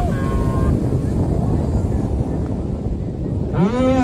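Strong wind buffeting the microphone: a steady, loud low rumble. Near the end a loud, drawn-out pitched sound rises in over it.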